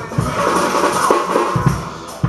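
Drum kit played live in a jazz groove: bass drum kicks under ringing cymbals, with snare strokes.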